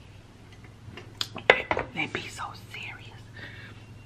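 Metal tumbler with a steel straw being set down, giving a few sharp clicks and clinks about a second into the clip, followed by soft whispered mouth and voice sounds after a drink.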